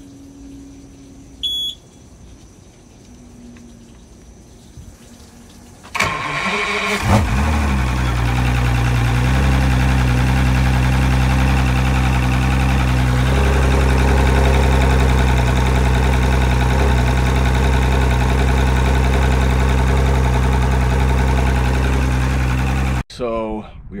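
A short beep, then about six seconds in an Evinrude 175 FICHT V6 two-stroke outboard cranks and fires, running with its cowling off. It settles within a second or two into a steady idle and cuts off abruptly near the end.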